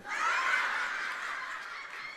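Studio audience laughing together: the laughter breaks out at once and slowly dies away.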